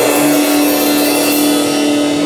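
Rock band's final held chord ringing out, with the drum kit's cymbals crashing and washing over it.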